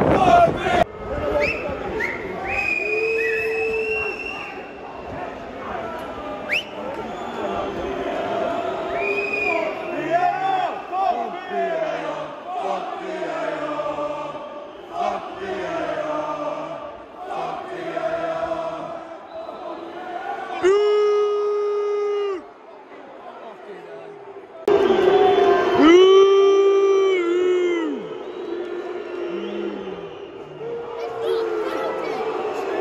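Football crowd in the stadium singing and chanting. Two long, loud held notes ring out close by, about two-thirds of the way in and again near the end.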